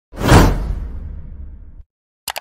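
Whoosh sound effect of an animated logo intro. A sudden rush peaks within half a second, then a low tail fades and cuts off abruptly just before the end.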